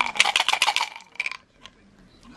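Large colonoscopy-prep tablets rattling and clicking as they are shaken out of their bottle into a hand: a fast run of clicks for about a second and a half, then a stray click or two.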